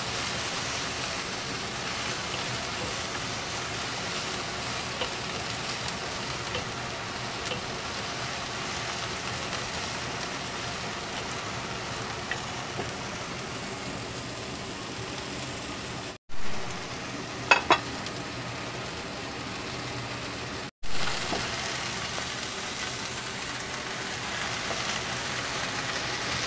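Chinese scallion stalks and vegetable strips sizzling steadily in a hot wok over a high flame while being stir-fried. A few short sharp clinks sound about two-thirds of the way through, and the sizzle drops out abruptly twice for a moment.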